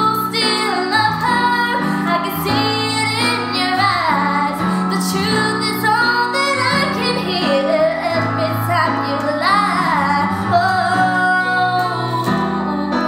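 A young woman singing a slow ballad with vibrato on the held notes, accompanied by sustained chords on a Roland electric keyboard.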